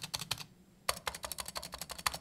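Keystrokes on a Razer Huntsman V2 TKL with linear optical switches: a short cluster of presses, a brief pause, then a rapid run of keystrokes from about a second in, moving from the left side of the board to the right. The test is meant to show that the left shift's stabilizer sounds rattly and loud, much worse than the right one.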